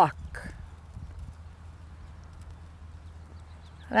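Faint hoofbeats of a horse walking on a sand arena, soft uneven clip-clop thuds, over a steady low hum.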